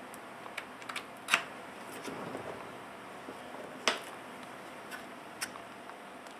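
Scattered light clicks and knocks of a laptop and its plastic cooling-pad stand being handled and tilted, with two sharper clicks a little past one second and near four seconds and a soft rustle around two seconds.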